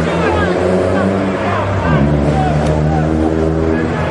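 Spectators talking in the stands of a football ground, over a steady low drone that dips in pitch briefly about halfway through.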